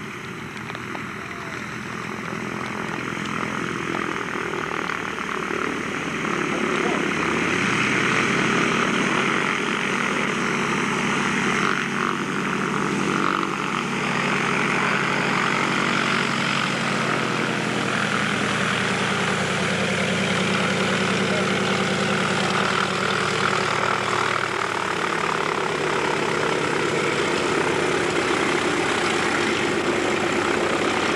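Propeller engines of a twin-engined Britten-Norman Islander running as it taxis, growing louder over the first eight seconds or so and then holding steady.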